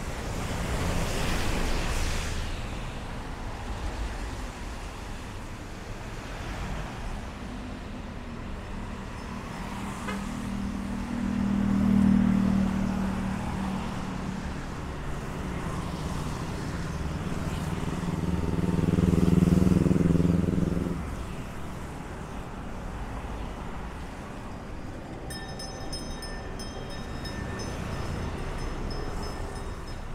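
Road traffic going by: motor vehicles pass one after another, two of them drawing close and loud about twelve seconds in and around twenty seconds in, their engine hum building and then fading. Faint steady high tones sound near the end.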